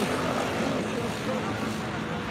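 Busy street ambience: steady traffic noise with low, murmured voices mixed in.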